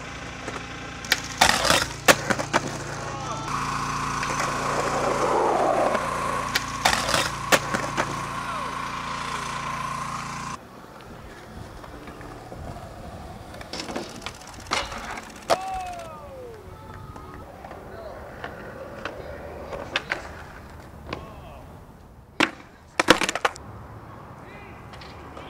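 Skateboards rolling on concrete, with the sharp clacks of boards popping and landing several times across a few separate clips. In the first part a steady high whine runs under the rolling and stops abruptly at a cut.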